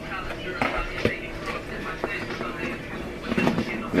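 Flour-dredged country fried steaks sizzling steadily in shallow oil in a skillet, with a couple of light knocks about half a second and a second in.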